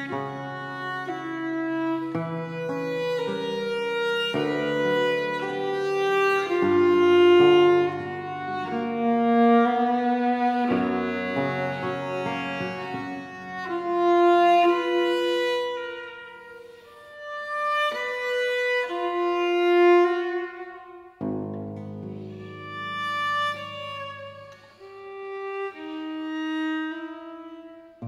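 Viola and theorbo playing a slow Baroque sarabande in G minor: a bowed viola melody of long held notes over plucked bass notes from the theorbo.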